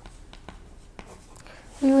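Faint scratching and light taps of a pen writing on a paper pad, a few short strokes spread over the quiet stretch. A voice starts speaking just before the end.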